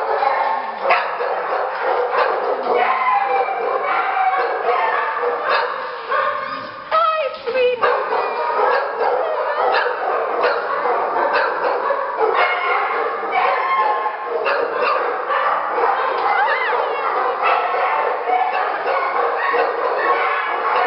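Dogs barking and yipping almost without pause in a shelter kennel room, several overlapping at once, with a short lull about seven seconds in.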